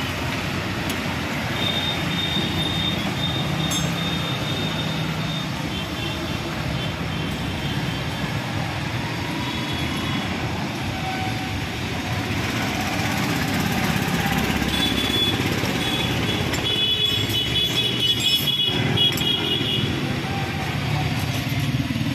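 Steady street traffic noise, with faint high-pitched tones that come and go, near the start and again late on.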